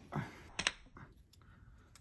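Light clicks and ticks of a pack of trading cards being opened and handled: two sharp clicks about half a second in, then a few fainter ticks.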